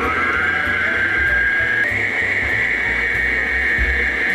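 Electric stand mixer with a balloon whisk running in a bowl of cake batter: its motor whine rises in pitch over the first couple of seconds as it speeds up, then holds steady.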